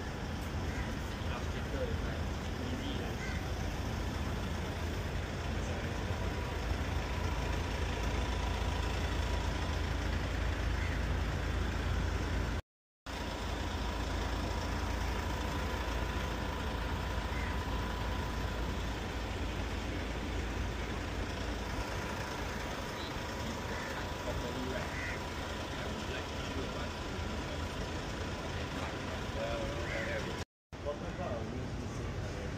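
Steady outdoor street background noise: a low rumble with hiss and a faint steady hum. It drops out to silence for a moment about halfway through.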